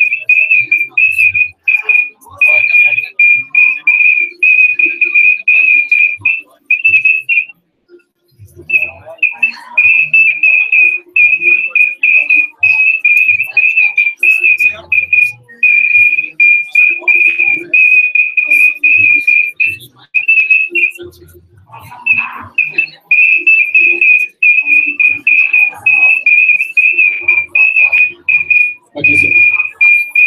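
A high-pitched audio feedback whine: one steady tone that keeps chopping off and on, with longer breaks about a quarter of the way in and about two-thirds through. Faint voices lie underneath.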